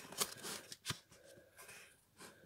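A stack of parchment-effect paper sheets riffled by hand at their edges: a few quick papery flicks and rustles, the sharpest about a second in.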